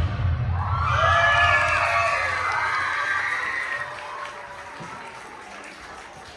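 Dance music stops, and about a second later an audience breaks into cheering and shouting in high voices, fading away over the following seconds.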